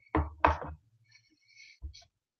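A ceramic mug being set down on a desk: two knocks in quick succession, then a softer knock near the end.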